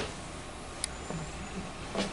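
Steady room noise with one sharp click a little under a second in and a faint low murmur after it.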